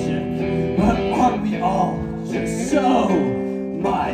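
Live song: electric guitar chords ringing under a man's singing voice.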